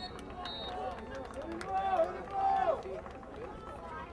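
Several voices shouting over a low background din. Two loud drawn-out yells come about two seconds in, the second half a second after the first.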